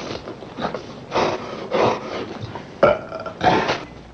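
A man retching and gagging in a series of heaves, the nausea of a character conditioned to be sick whenever violence is near.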